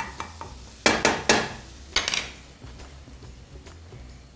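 Wooden spatula stirring and knocking against a stone-coated frying pan, with four sharp knocks between about one and two seconds in, over a faint sizzle of food frying in oil.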